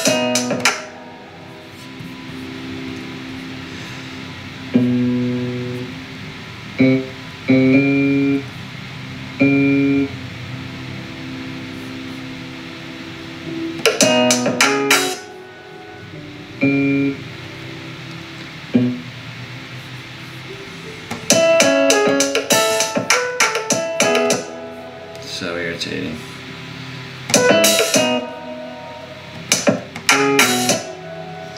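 Logic Pro's Fingerstyle Bass software instrument played one note at a time from a MIDI keyboard, single sustained bass notes with pauses between them, alternating with short passages of the beat playing back with piano and sharp drum hits.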